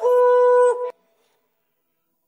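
An isolated sung vocal: the last word of the song held as one steady note, with a slight filtered, horn-like tone from the vocal isolation, cutting off suddenly just before a second in.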